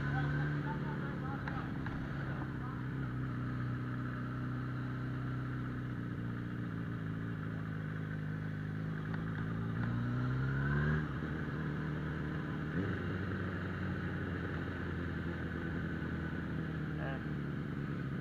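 Suzuki Bandit 650N's carbureted inline-four engine running steadily while riding. About ten seconds in, its pitch rises as the throttle opens, then drops sharply near eleven seconds before settling back to a steady run.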